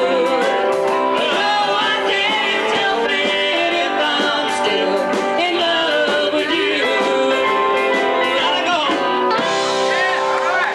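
Live band playing a country-rock song, with a man and a woman singing into microphones over electric guitar and drums.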